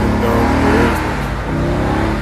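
Ford Mustang engine revving hard during a burnout, its rear tyres spinning in thick smoke.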